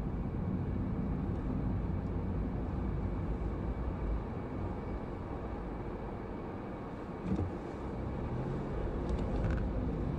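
Car driving slowly, heard from inside the cabin: a steady low rumble of engine and tyres on the road. There is a short knock about seven seconds in.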